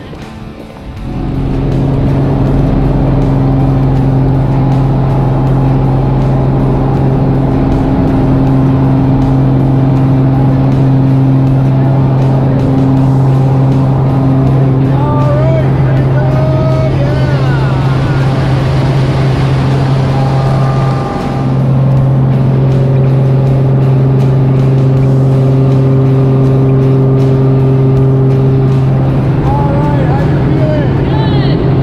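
Propeller aircraft engine running steadily, heard from inside the cabin of a skydiving jump plane during the climb, a loud even drone that sets in about a second in. Voices come through faintly over it in the middle.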